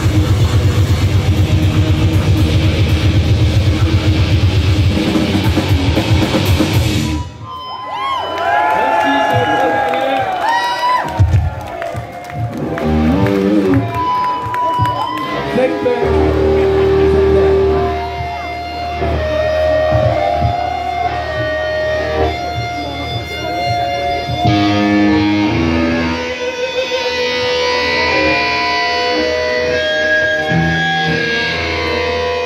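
Grindcore band playing at full speed with drums and distorted electric guitars, stopping abruptly about seven seconds in. After that, electric guitar holds single notes and bends that ring out with no drums behind them.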